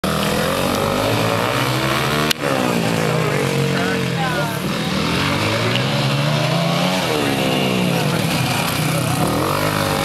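Two dirt bike engines revving up and down as the bikes ride around a dirt track, their pitch rising and falling with throttle and gear changes. There is a sharp click a little over two seconds in.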